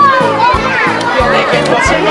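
Music with a steady beat, about two and a half beats a second, with children's voices shouting and chattering over it.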